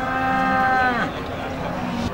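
A Limousin bovine mooing: one call about a second long that holds its pitch, then drops away as it ends.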